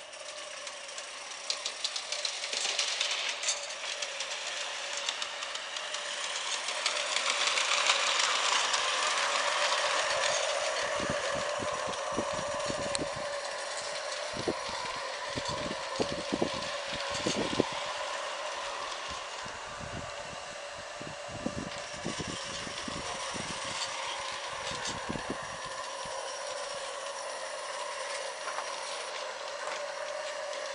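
Gas-fired live-steam garden-railway locomotive running: a steady hiss of steam and burner with a steady tone beneath it, swelling for a few seconds early on. A run of sharp clicks and knocks fills the middle.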